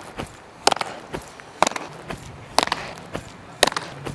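A baseball being popped into a leather fielder's glove with sharp slaps, about once a second, four times.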